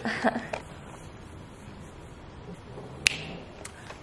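Quiet room sound after a brief bit of voice at the start, with one sharp click about three seconds in and two faint ticks just after.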